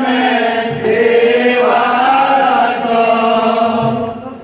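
Group of men singing an Odia devotional kirtan chant together, with long held notes that slide up and down in pitch.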